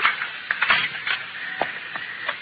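Radio-drama sound effects: a few separate, irregular knocks and clatters as a rifle is handled and tossed down, heard through the narrow sound of an old broadcast recording.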